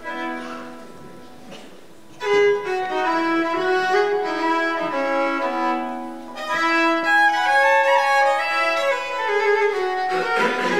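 Solo Hardanger fiddle playing a Norwegian folk tune, with several strings sounding together over a ringing drone. It eases into a soft lull at first, then comes back loud and busy about two seconds in.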